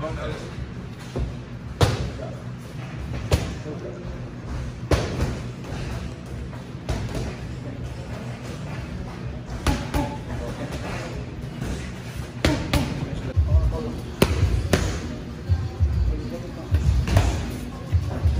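Boxing gloves landing on a trainer's punch pads and focus mitts: sharp smacks at an irregular pace, some in quick pairs, over a low steady gym hum.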